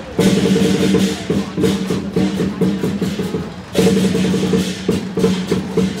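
Lion dance percussion band: drum, cymbals and gong played in a fast, even rhythm, with a strong accented hit just after the start and another a little before four seconds in.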